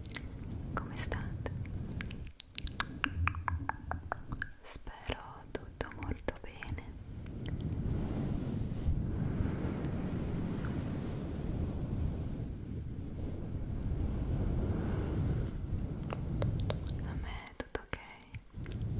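Fingers rubbing and brushing the fluffy fur windscreen of a close microphone, a steady low scratchy rumble through the middle stretch. In the first several seconds and again near the end there are quick sharp clicks with soft whispery mouth sounds.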